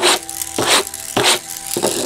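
Plastic wheels of a Pikachu Happy Meal toy scraping along a tabletop as it is pushed back and forth, about four short strokes roughly half a second apart.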